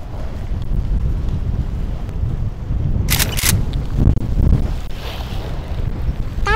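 Wind buffeting the microphone aboard a fishing boat on a windy, choppy sea: a steady low rumble, with a couple of sharp clicks about three seconds in.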